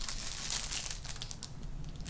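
Packaging crinkling and crackling in the hands as a sticky note set is worked open, with many small irregular crackles.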